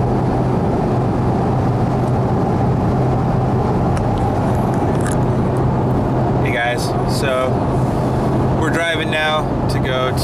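Steady road and engine noise inside a car cabin at highway speed, with a low, constant drone. Voices call out briefly about two-thirds of the way in and again near the end.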